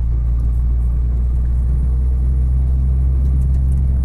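Inside a heavy truck's cab while cruising: the steady low drone of the diesel engine and the road, unchanging in pitch.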